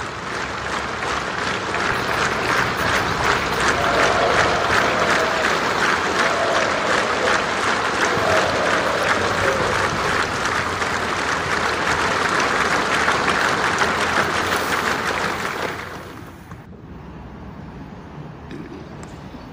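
A large audience applauding in a hall, swelling in over the first couple of seconds, holding steady, then dying away about sixteen seconds in.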